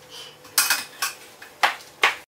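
Stainless-steel ice-pop mold and a glass jar clinking against each other and the countertop as they are handled: a few short, sharp clinks.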